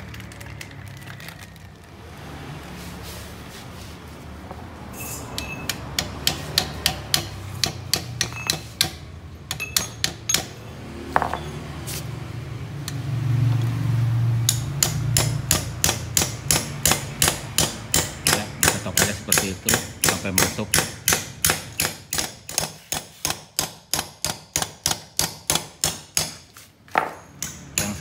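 Hammer driving a new torsion-arm bearing into a Peugeot 206 rear trailing arm: sharp metal strikes, scattered at first, then an even run of about three taps a second through the second half.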